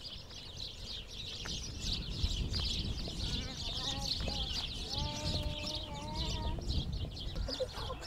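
Many small birds chirping busily and without a break, with a few short calls from the chickens and one long drawn-out call near the middle.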